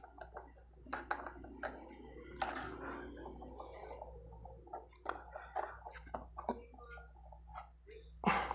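Faint, irregular clicks and taps of hands handling the metal-strip magnet arm and fitting it back onto the base of a homemade magnetic motor.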